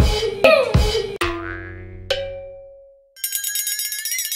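Cartoon boing sound effects: several springy boings in quick succession with bending, falling pitch, the last two ringing out and fading. After a brief gap about three seconds in, a rapidly fluttering tone slowly rises as a transition effect.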